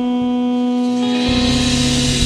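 Live band music: a sustained chord rings on, and about a second in a low bass note and a bright, hissing high wash come in.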